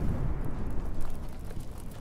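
A low, noisy rumble from a music video's soundtrack, with no music, fading slowly.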